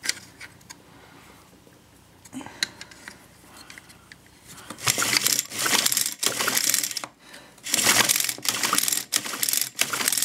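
A small engine's recoil starter pulled twice, each pull a rapid, rattling whir of about two seconds, spinning the engine with its spark plug out and held against the engine for a spark test. The test shows a strong spark.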